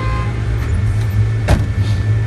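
Car engine running close by with a steady low rumble as the car moves off, and a single sharp knock about a second and a half in.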